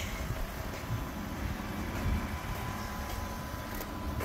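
Ford F-150's 5.0-litre V8 idling: a faint, steady low rumble.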